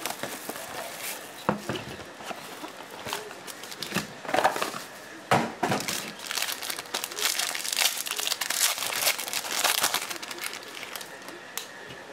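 Foil trading-card pack crinkling as it is handled and torn open, in repeated short bursts of crinkling and tearing.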